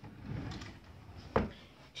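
A wardrobe drawer sliding, then one sharp knock about one and a half seconds in as it is pushed shut.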